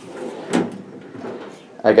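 A metal tool cabinet drawer being pulled open, sliding out with a knock about half a second in.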